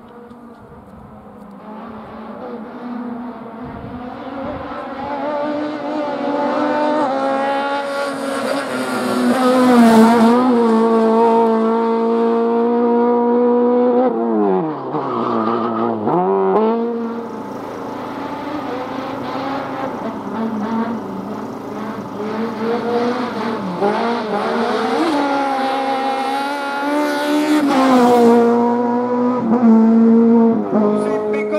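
Autobianchi A112 hill-climb car's four-cylinder engine revving hard as it comes up the course, its note rising and growing louder through the gears. About halfway through, the revs fall in one long downward sweep, then climb again and peak near the end.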